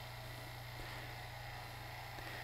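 Oil-sealed vacuum pump running steadily, a faint low hum with a light hiss, as it pumps down the pressure in a discharge tube.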